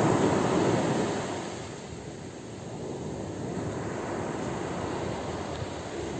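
Ocean surf: a wave washes in, louder for the first second or so, then eases to a steady lower wash of water.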